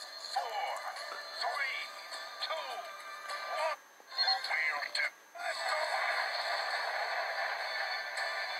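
Cartoon soundtrack played through a tablet's small speaker and picked up by a phone: thin, tinny music with a synthetic, robotic-sounding voice gliding up and down. The sound cuts out briefly twice, about four and five seconds in, as the playback is skipped back.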